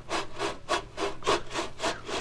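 Steam-locomotive chugging sound effect: an even rhythm of short, hissing chuffs, about five a second.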